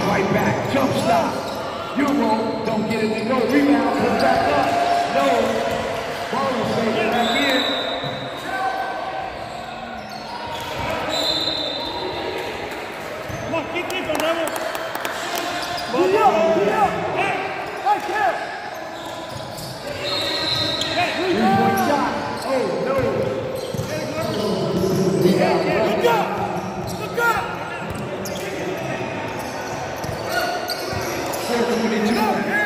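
Basketball bouncing on a hardwood gym floor during play, with a few brief high squeaks, likely from sneakers on the court, and voices of players and spectators echoing in a large hall.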